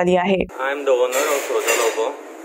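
Speech only: a woman talking, then from about half a second in a man talking with thin sound that has no bass.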